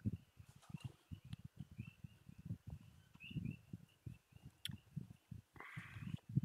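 Faint gulping and swallowing as a man drinks beer from a glass mug, with faint high chirps in the background.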